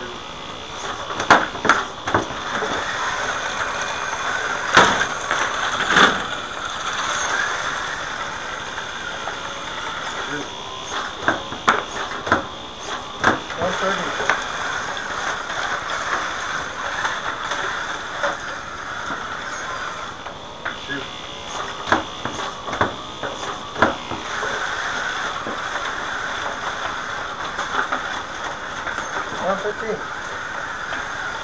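Electric drive motors and gears of an FTC competition robot with mecanum wheels, whining steadily as it drives about the field. Sharp clacks and knocks come at irregular intervals, loudest about a second in, near 5 and 6 seconds, and again around 22 and 24 seconds.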